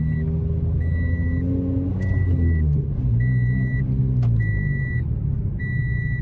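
Car engine and road rumble heard from inside a moving car's cabin, its pitch shifting slowly, under a dashboard warning chime that beeps evenly about once every 1.2 seconds. Two sharp clicks stand out, about two seconds in and again a little past four seconds.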